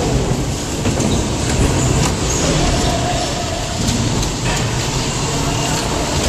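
Bumper car rolling across the arena floor: a steady rumble with a few short knocks.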